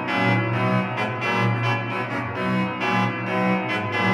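Organ music from a sampled virtual pipe organ played on a three-manual console with pedals: full, bright chords with strong bass, moving in a steady pulsing rhythm.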